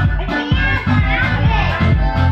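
Upbeat dance music with a steady bass beat, with children's voices over it in the middle.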